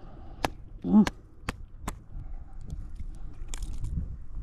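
Sharp clicks of fishing pliers and lure hooks as a small fish is worked off the lure by hand, four clicks in the first two seconds and a few fainter ones later. A short low grunt sounds about a second in.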